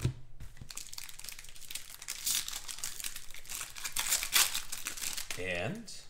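Plastic card-pack wrapper crinkling and tearing as hands open and handle trading cards, in dense bursts of crackle, loudest about two and four seconds in. A low thump comes at the very start, and a short voiced hum comes near the end.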